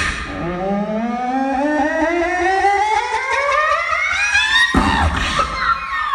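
Beatboxer's vocal percussion solo: one long vocal sweep rising steadily in pitch for about four seconds. Near the end deep bass thumps kick in with a quick falling swoop.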